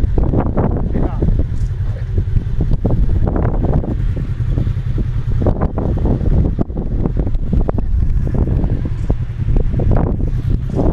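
Polaris RZR XP 1000 side-by-side's engine running as it crawls over a slickrock crack, with a steady low rumble and wind on the microphone. Onlookers' voices come and go over it.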